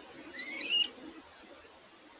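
A bird calls once: a short whistled call, about half a second long, rising in pitch and ending on a higher note.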